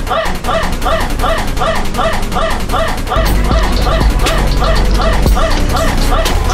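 A short, high, yapping call repeated rapidly and evenly, about three times a second, over music; a heavy bass layer comes in about halfway through.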